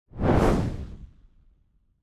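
A single whoosh sound effect: a rush of noise that swells quickly and fades away over about a second.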